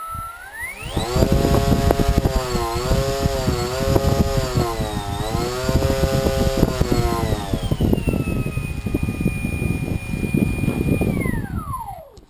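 A 5900 KV micro brushless motor spinning the propeller of a small foam-board flying wing, throttled up to a whine that wavers up and down twice. It then holds a steady high pitch and spools down at the end, with a rough low rumble underneath throughout.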